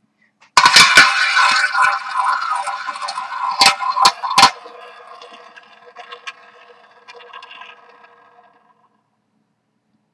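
A ball spun around a small tabletop roulette wheel, rolling and rattling loudly in the track, with three sharp clacks about four seconds in, then rattling more and more softly as it slows and dies away. The ball is bouncing over the pockets, reluctant to drop into one.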